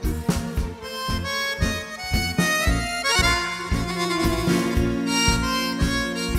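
Accordion playing a tango melody in an instrumental passage, over the band's steady bass and drum beat.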